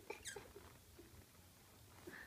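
Near silence, with a few faint, brief sounds in the first half second.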